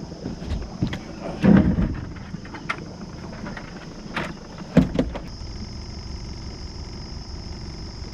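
Several knocks and thumps on the boat as a freshly caught catfish is handled, the loudest about a second and a half in and just before five seconds, then an electric bow trolling motor hums steadily as the boat moves off.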